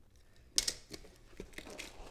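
Trading-card boxes and their wrapping being handled and opened: a sharp click about half a second in, then a few lighter clicks and faint rustling of cardboard and plastic.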